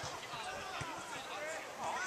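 Footballers' voices calling and chatting at a distance across the pitch, with a few faint knocks.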